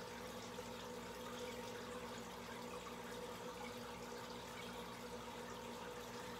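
Aquarium filtration running: a steady trickle and splash of moving water, over a faint steady pump hum.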